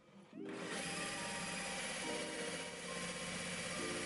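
Cordless drill running steadily with a tile bit, grinding through a ceramic tile; it starts about half a second in. It is slow, hard drilling that leaves the drill overheated.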